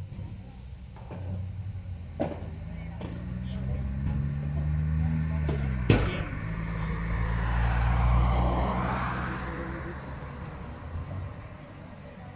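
A motor vehicle passes on a nearby road, its engine growing louder, dropping in pitch and fading away after about eight seconds. A few sharp knocks stand out, the loudest about six seconds in.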